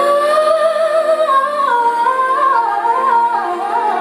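A woman singing a long, ornamented sung line: the pitch rises and holds, then steps down through wavering vocal runs over the last couple of seconds, over steady held backing tones.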